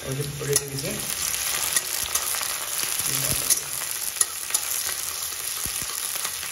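Chopped ginger, garlic and green chillies sizzling steadily in hot oil in a metal kadhai. A metal spatula clicks and scrapes against the pan now and then as they are stirred.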